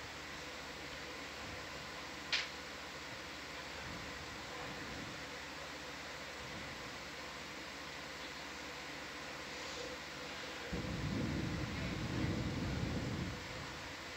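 Steady fan-like hum of room ventilation and equipment. There is one brief faint tick about two seconds in, and a low rumble starts near eleven seconds and lasts under three seconds.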